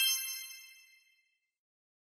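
A bright, high chime sound effect of several ringing tones for a logo intro, ringing out and fading away within about a second.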